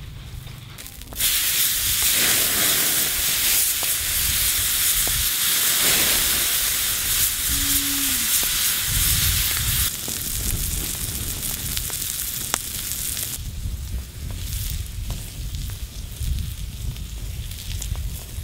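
Whole beef tongue sizzling on a hot steel plate over a wood fire: a loud hiss starts suddenly about a second in, eases about ten seconds in and dies away a few seconds later.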